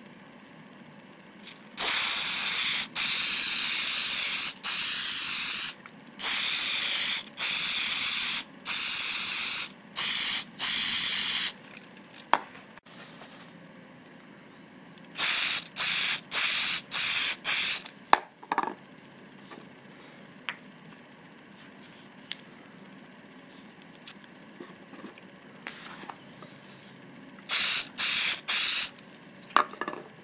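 Aerosol can of spray adhesive hissing in repeated short bursts, each about a second or less with brief gaps. There is a long run of bursts at the start, a shorter run in the middle and a few more near the end.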